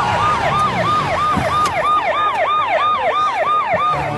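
Emergency vehicle siren sounding in a fast repeating cycle, about three sweeps a second, each a quick rise and a falling glide in pitch.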